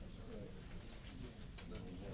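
Faint, indistinct murmur of people talking quietly in a room, with a soft click near the end.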